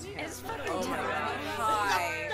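Overlapping chatter of several women's voices talking and exclaiming at once, over music.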